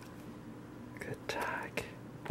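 A short, quiet whisper, about a second in, over low room tone.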